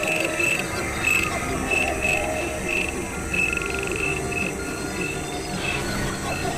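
A dense experimental collage of several music tracks playing over one another and electronically processed. A short high chirp repeats irregularly, about twice a second, over a murky, crowded low end, and the chirps thin out near the end.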